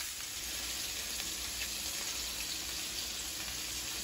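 Sliced bell peppers and onions sizzling steadily in oil in a pan.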